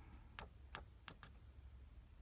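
Near silence: quiet room tone with a few faint, short ticks in the first second or so.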